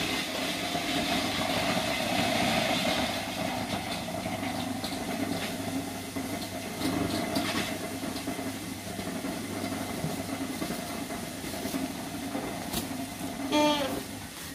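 A motor running steadily with a low, even drone. Near the end there is a brief falling cry.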